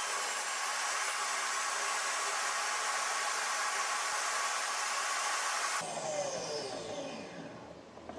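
Small table saw running steadily with a motor whine, switched off about six seconds in, its blade winding down with a falling whine.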